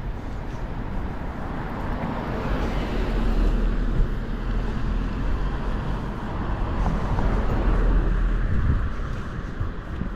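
Road traffic: cars passing on the street, the noise swelling around three seconds in and again around eight seconds in, over a low wind rumble on the microphone.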